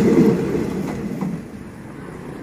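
Passenger train coaches rolling past on the rails, a low steady rumble of wheels on track that fades away about a second and a half in as the train leaves.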